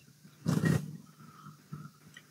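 A short, rough, breath-like noise from a man's voice microphone, about half a second in, in a pause between spoken sentences, with two faint softer sounds after it.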